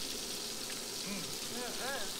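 Food sizzling steadily in a frying pan on the stove, under faint voices.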